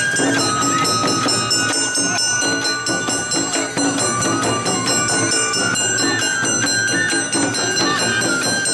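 Awa odori festival music played live: a bamboo flute melody stepping and sliding over the clang of a small hand gong and drum strikes, in a steady brisk beat.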